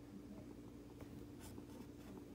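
Faint scratching of a plastic stylus drawn across the surface of a light-up drawing board, with a few soft strokes about a second and a half in, over a steady low hum.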